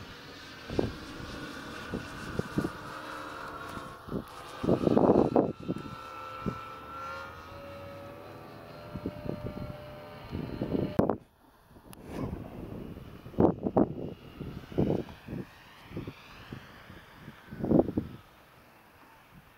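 The propeller engine of a small biplane runs in flight overhead, its pitch gliding up and down as it moves across the sky. Gusts of wind thump on the microphone and are the loudest sounds.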